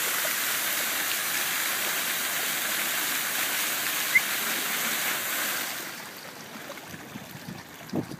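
Park fountain jets splashing into a shallow pool: a steady rush of falling water that turns quieter about six seconds in. A brief high chirp comes about four seconds in.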